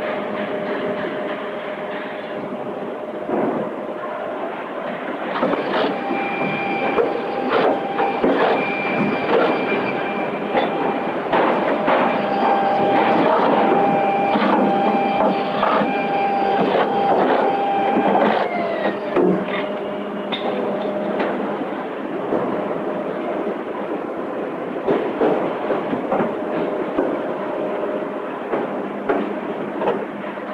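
Car assembly-line factory noise: machinery running continuously with frequent metallic clanks and knocks. A steady whine runs from about six seconds in and fades away about eighteen seconds in.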